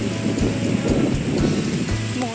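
Wind buffeting the phone's microphone, a steady gusty rumble, with surf behind it.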